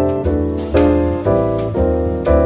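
Jazz piano trio recording: an acoustic piano plays a run of full chords, a new one struck about every half second, over a double bass line.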